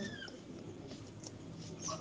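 A pause in speech with low background noise and a few faint, high, gliding animal calls, one near the start and more near the end.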